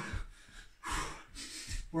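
A man's hard, quick breaths while doing jumping jacks, two noisy exhalations in the middle, with soft thuds of his trainers landing on a rug over a wooden floor.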